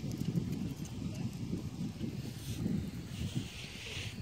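Hoofbeats of a horse on soft arena dirt as it goes from a trot into a canter, growing fainter as it moves away.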